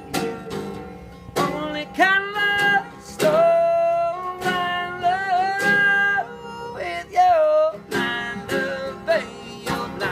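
Live guitar music in an instrumental break: long, sustained guitar notes that glide up into pitch and waver, over a beat struck roughly once a second.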